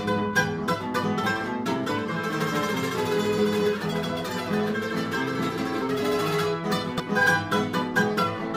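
Three acoustic guitars playing an instrumental interlude together, plucked strums and chords under a quick picked melody line, with no singing.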